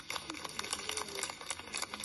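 Scattered applause from a small outdoor crowd, heard faintly as a run of irregular sharp claps.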